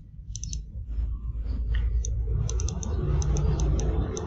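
Computer mouse button clicked again and again in quick runs of two to four clicks, a few shortly after the start and more from about two seconds on, as a dialog's spinner arrow is pressed to step a value up. A steady low rumble runs underneath.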